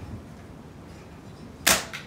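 A single air rifle shot, a sharp crack about three-quarters of the way in, followed by a fainter click about a quarter second later.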